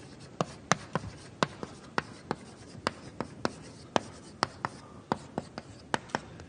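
Chalk writing on a blackboard: a string of sharp, irregular taps, about three a second, as each letter is struck and stroked onto the board.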